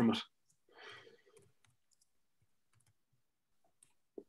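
A man's last spoken word, then a soft breath out and a few faint clicks, then near silence.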